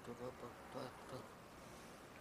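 A man's voice speaking a word or two quietly in short broken bits during the first second, with a buzzy tone, over faint tape hiss.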